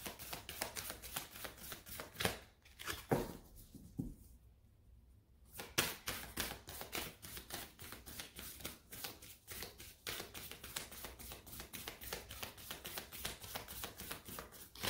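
A tarot deck being shuffled by hand: a fast, steady patter of card clicks, with a brief pause about four seconds in before the shuffling resumes.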